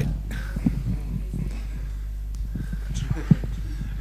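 Room tone with a steady low electrical hum, faint murmuring voices and a few soft knocks.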